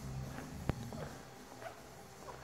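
Faint footsteps on a hard showroom floor with one sharp click a little under a second in, over a low room hum.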